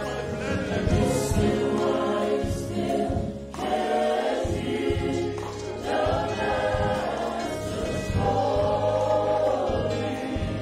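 Church worship team of male and female singers singing a gospel song together into handheld microphones, amplified through the PA.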